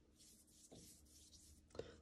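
Faint swishing of a paintbrush stroking wet watercolour paint across paper, in a few soft strokes.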